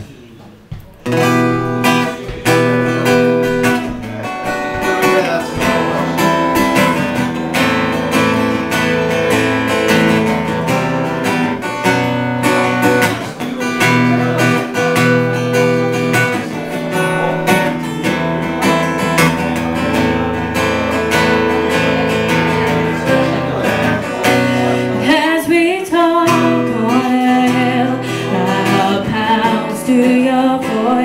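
Acoustic guitar played solo as the introduction to a song, starting about a second in. A woman's singing voice joins near the end.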